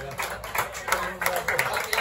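Scattered hand clapping from a small crowd of spectators applauding a pair of goalkeeping saves, with voices talking over it.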